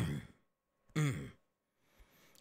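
A man's voice making two short wordless vocal sounds about a second apart, each falling in pitch and somewhat breathy.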